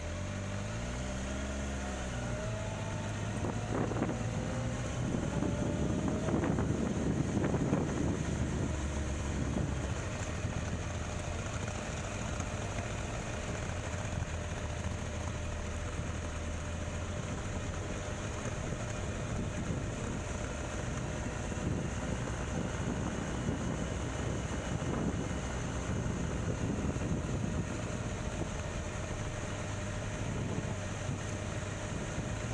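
Motorcycle engine running while riding slowly, its pitch rising and falling in the first few seconds, with wind noise on the microphone that is strongest a few seconds in.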